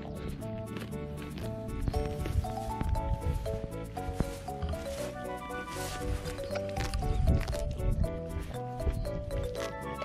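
Background music with a light melody, over a pony foal grazing at the microphone: irregular tearing and chewing of grass.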